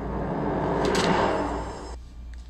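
Horror-film soundtrack effect: a swelling whoosh that builds to a peak about a second in, with a sharp click at the peak, then fades away.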